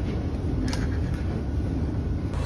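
Steady low rumble of background noise with no clear pitch, with a faint click about two-thirds of a second in and another just after a second.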